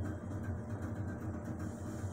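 Steady low hum with a faint hiss over it, the running equipment of a large homemade indoor aquarium.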